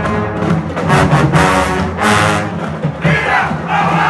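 Brass band sounding its last held chords, with loud crashes about one and two seconds in. From about three seconds in, the crowd breaks into cheers and shouts.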